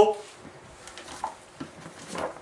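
The end of a man's spoken "hello" right at the start, then quiet small-room tone with a few faint rustles and small clicks of handling as he picks up a book.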